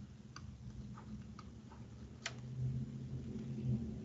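A few faint, sharp, irregular clicks of a stylus tapping on a tablet screen while handwriting, over a low steady hum.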